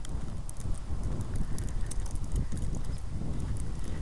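Footsteps in fresh snow, a run of soft thumps with small crisp clicks, over a steady low rumble of wind on the microphone.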